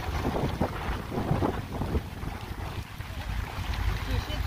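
Wind buffeting the microphone in a low, steady rumble, with a few brief rustles in the first second and a half.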